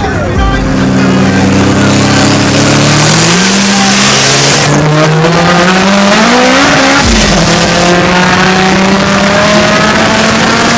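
Turbocharged car engine accelerating hard at full throttle, heard from inside the car. Its note climbs, drops sharply at a gear change about seven seconds in, then climbs again.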